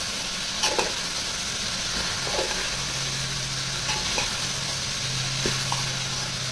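Raw jackfruit pieces frying in a metal pot with a steady sizzle, while a steel spoon stirs them, scraping and knocking against the pot four times.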